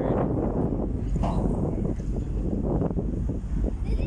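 Wind buffeting the phone's microphone on a ferry's open deck: a steady, gusty low rumble with no clear tone.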